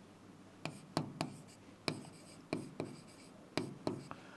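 Chalk writing on a blackboard: quiet, short sharp taps and scratches, about two a second, as figures are chalked on the board.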